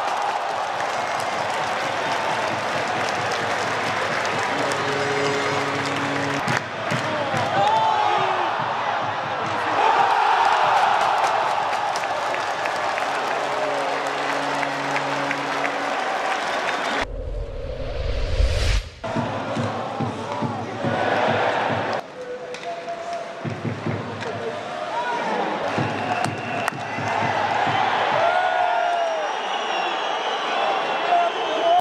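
Ice hockey arena crowd noise with cheering after a goal, and a steady horn-like tone sounding twice. About halfway through, a whoosh rising sharply in pitch over a deep rumble, a transition effect, then the crowd again.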